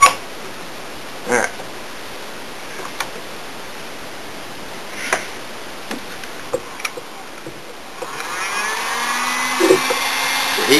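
Hammer tapping glued laminated maple strips down onto a coaming form, a sharp knock at the very start and a few lighter taps and clamp clatter after. About eight seconds in a heat gun starts up, its fan noise rising with a climbing whine as it gets going.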